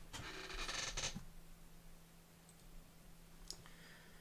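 A short scratchy rustle of handling noise close to the microphone, lasting about a second, then a single click about 3.5 s in, over a faint steady electrical hum.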